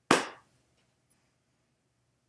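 A single short, sharp smack right at the start that dies away within a fraction of a second.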